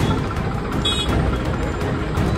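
Tractor engine running with a steady low rumble, under background music. A brief high tone sounds about a second in.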